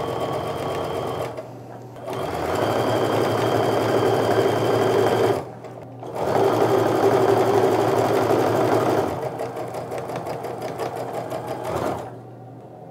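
Electric sewing machine stitching a quarter-inch seam through quilt fabric, its motor and needle running in steady spells. It stops briefly twice, about a second and a half in and about halfway through, and runs more softly over the last few seconds.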